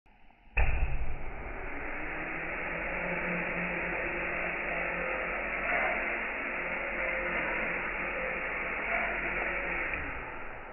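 The four small electric motors and propellers of a mini popsicle-stick quadcopter spin up: a steady whirring buzz that starts abruptly about half a second in, loudest right at the start, then holds steady as the drone lifts up its guide rod.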